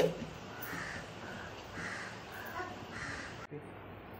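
Repeated short bird calls, about two a second, over a steady hiss. The hiss stops abruptly near the end, while the calls carry on.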